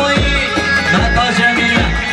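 Loud amplified Kurdish wedding dance music played live: a sustained melody over a heavy, regular drum beat, for a line dance.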